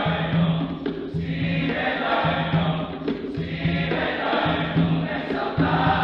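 Large male choir singing in harmony, with strong low notes coming in a steady pulse about once a second.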